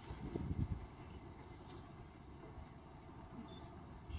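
Quiet open-air ambience: a steady low rumble with a few soft thumps in the first second, and a brief faint high chirp near the end.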